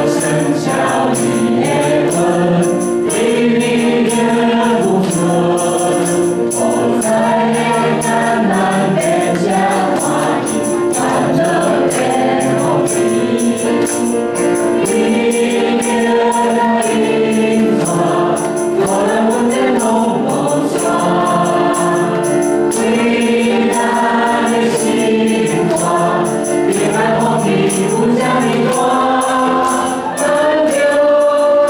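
A small group of amplified voices singing a worship song in Taiwanese, over piano accompaniment with a steady beat.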